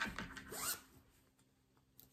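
A brief scratchy rustle, a few quick rasping strokes, then near silence for the second half.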